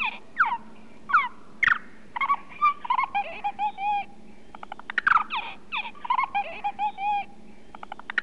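A run of bird-like calls: quick downward-sweeping chirps, then short repeated whistled notes. The sequence comes round a second time, with a quick rattle of clicks just before it starts again.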